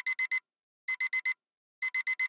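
Digital alarm clock beeping: a high electronic beep in quick groups of four, with a new group starting just under once a second, three groups in all.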